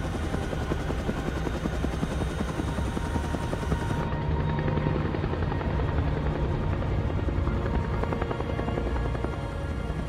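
Helicopter rotor beating steadily in flight, with film-score music underneath. The brightest part of the sound drops away about four seconds in.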